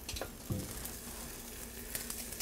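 Crumbled Italian sausage meat frying in olive oil in a skillet, a soft steady sizzle, with a couple of light clicks about half a second in.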